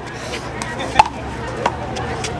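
Handball being struck and bouncing on a concrete court: a few sharp slaps, the loudest about halfway through.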